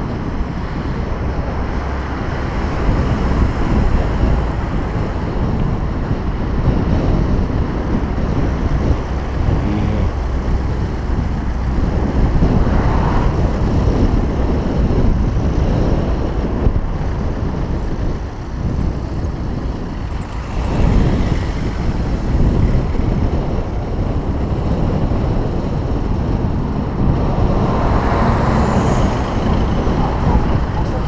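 Road traffic heard from a moving bicycle on the shoulder, mixed with wind rushing on the camera microphone: a loud, steady, mostly low rush of noise. It swells a few times as cars go by alongside, around the middle and near the end.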